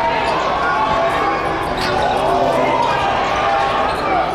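A basketball being dribbled on a hardwood gym floor over steady crowd chatter in a large hall. A few short squeals, rising and falling, come about two to three seconds in, in the manner of sneakers squeaking on the court.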